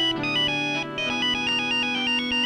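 Electronic mobile phone ringtone playing a quick stepping melody of clear, beeping notes over film music.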